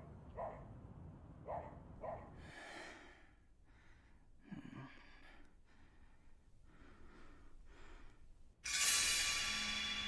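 A person's soft, slow breathing, a breath about every second. Music swells in loudly near the end.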